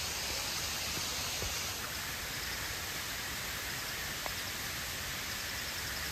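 Steady rushing noise of flowing water, like a forest stream or a distant waterfall, even throughout.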